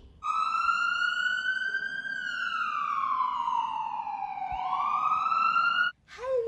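Emergency-vehicle siren sound effect: a single wailing tone that rises, falls slowly, then sweeps back up, cutting off abruptly near the end.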